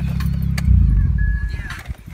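Car engine idling at about 1,000 rpm on fresh oil just after an oil change, then switched off a little under a second in with a brief low shudder that dies away. A short electronic chime sounds near the end.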